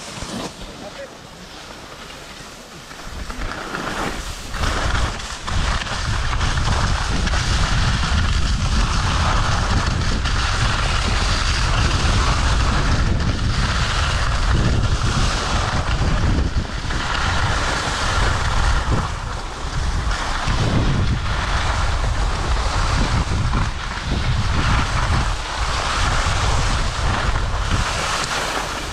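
Wind buffeting the microphone and skis hissing and scraping over packed snow on a downhill ski run, quieter for the first few seconds and then loud and steady.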